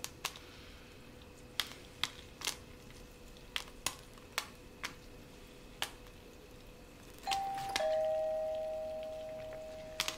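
Two-tone doorbell chime about seven seconds in: a higher note, then a lower one half a second later, which rings on and fades slowly. Before it there are a few faint, scattered clicks.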